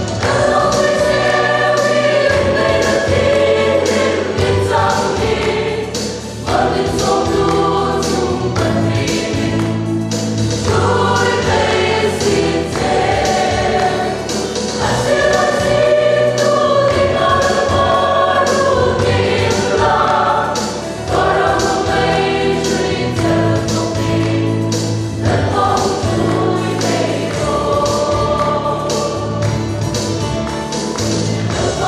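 Mixed choir of men and women singing a hymn together, in sung phrases a few seconds long with brief breaks between them.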